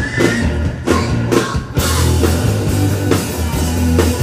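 Live rock band playing loudly: electric guitar, bass guitar and a drum kit.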